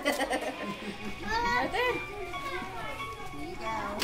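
Young children and adults talking over one another, with high-pitched child voices.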